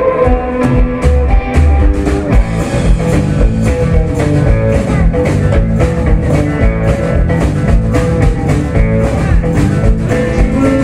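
Live rock band playing an instrumental, guitar-led passage: electric guitars and bass over a drum kit keeping a steady beat.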